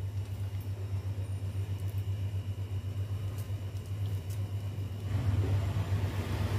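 A steady low hum with a faint hiss over it, and a couple of faint clicks.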